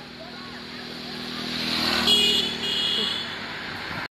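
A vehicle passing on the road close by, its tyre and engine noise rising to a peak about two seconds in and then fading, with two short high tones sounding at its loudest.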